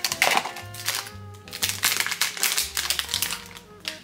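A plastic blind-box packet crinkling and tearing open in the hands, many quick crackles, over background music with a steady low tone.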